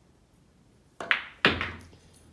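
Pool cue striking the cue ball about a second in, with a sharp clack of billiard balls colliding right after, then a louder, heavier thunk of a ball on the table about half a second later.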